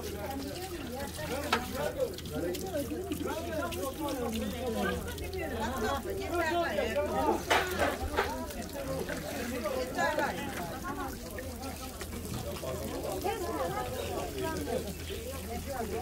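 Indistinct overlapping chatter of several voices, with faint splashing of water as fish are rinsed in a tub and a few sharp clicks.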